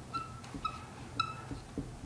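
Dry-erase marker squeaking on a whiteboard while a word is written: three short, high squeaks about half a second apart, each at much the same pitch.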